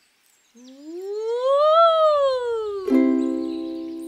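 A woman's voice sliding on "ooh" from low up high and back down again, tracing a snake shape. Then, about three seconds in, a ukulele chord is strummed once and left to ring, slowly fading.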